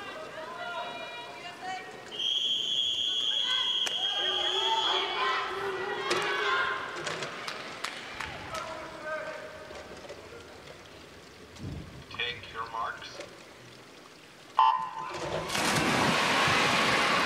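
Swimming race start in an arena. A long, steady, high-pitched referee's whistle blows for about three seconds over a murmuring crowd, then the hall goes quiet for the start. About a second and a half before the end, the electronic start signal sounds, and loud crowd noise and the splash of the dive follow.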